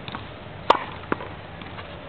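Tennis racket striking a tennis ball with one sharp pop about two-thirds of a second in, followed about half a second later by a fainter knock.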